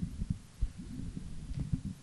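Soft, irregular low thumps and rumble over a faint steady hum, with no speech.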